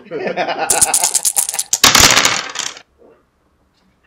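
A twelve-sided die rolled into a wooden dice box, clattering in a quick run of clicks for about two seconds before it settles.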